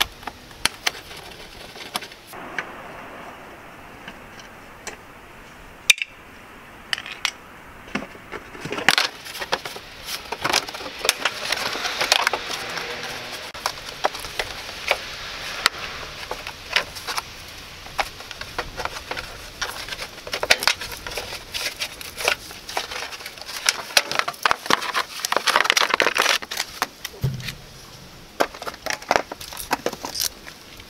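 A plastic wheel-arch liner being pried and pulled loose from a car's wheel well: repeated sharp clicks and crackling of flexing plastic, with scraping and rustling that comes in spells.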